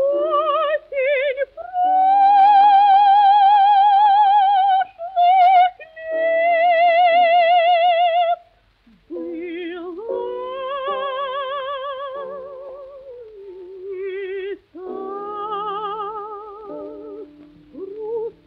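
Soprano voice singing a slow Russian romance with a wide vibrato over piano accompaniment, in a 1940 recording. Loud, long held high notes give way after a short break to softer, lower phrases.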